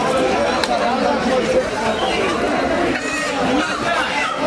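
Several people talking at once: steady background chatter of voices.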